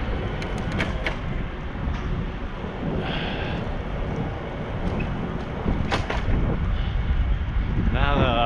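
Wind rushing over the microphone of a camera worn by a cyclist riding along a street, a steady low rumble with a few short clicks.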